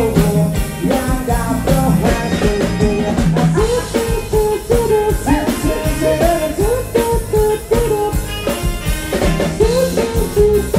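Live Thai band playing a retro ramwong dance song through a PA system: a man sings the melody into a handheld microphone over drum kit, bass and keyboards, with a steady beat and no break.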